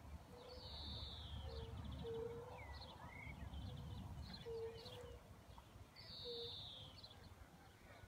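Faint outdoor birdsong from several birds: a high, down-slurred phrase heard twice, scattered chirps and short rattles, and a short low note repeated over and over. A low rumble sits under the first few seconds.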